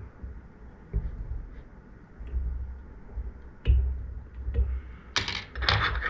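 Hands working at a fly-tying vise while a whip-finish tool ties off the thread: soft bumps and small clicks. Near the end come two sharper clicks as metal tools are handled on the table.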